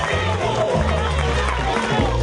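Loud rally music with a heavy bass line and a voice over it.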